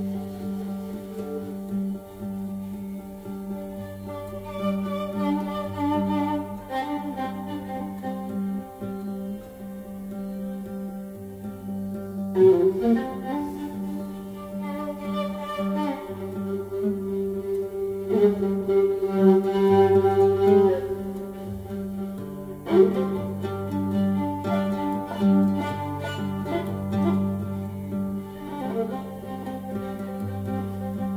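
Viola and oud playing a duet: the viola bows long sustained notes over a steady low drone while the oud plucks. Two sharp plucked accents come about twelve and twenty-three seconds in.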